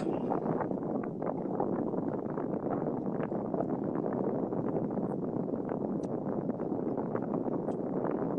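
Steady car-cabin rumble and road noise from a car's interior, picked up by a phone on a video call, with faint small ticks over it.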